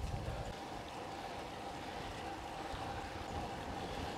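Riding noise from a road bike on asphalt, picked up by an action camera mounted on the bike: a steady rush of wind on the microphone mixed with the hum of its René Herse 28 mm tyres on the road.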